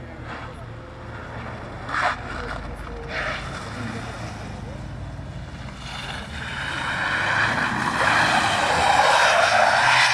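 Mercedes W203 C-class estate's 2.2 CDI four-cylinder turbodiesel running under throttle while the car drifts, with a brief sharp sound about two seconds in. From about six seconds the rear tyres spin and skid on the wet asphalt, a rising hiss of tyre noise that is loudest near the end.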